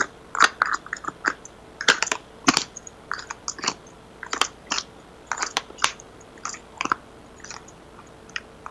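Tarot cards being handled and shuffled by hand close to the microphone: irregular crisp clicks and snaps, some in quick clusters.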